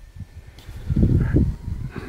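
Wind buffeting the microphone, a low rumble that gusts up about a second in and dies down again.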